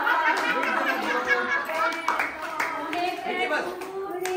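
A group of voices singing and chattering over one another, with scattered hand clapping.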